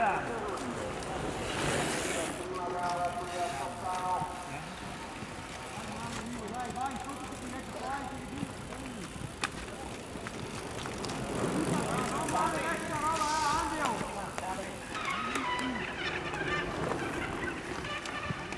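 Outdoor race-course ambience with people's voices calling out, not close enough to make out words. A brief rush of noise comes about two seconds in and again about thirteen seconds in.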